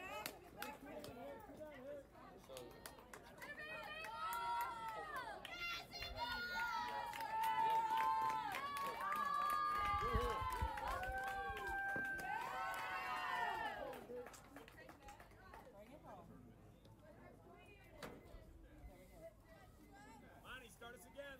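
A group of young women's voices shouting and cheering together for a home run, rising about three seconds in, loudest in the middle, and dying down after about fourteen seconds.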